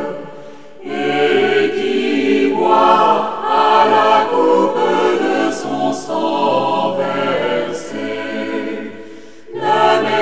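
A choir singing a French sacred song in sustained phrases. The sound dips briefly as a phrase ends just after the start, and again shortly before the end, and the voices come back in each time.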